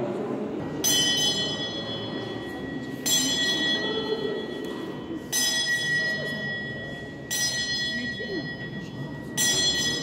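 A bell struck five times, about every two seconds, each stroke ringing on and fading before the next.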